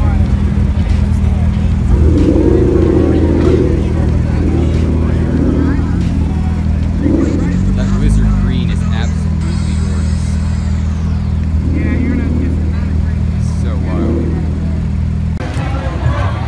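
Sports car engines idling steadily as the cars creep past at walking pace, with a slight rise in engine pitch about halfway through. Voices of people nearby can be heard over the engines.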